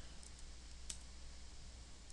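A few faint, sharp clicks over a low steady hum.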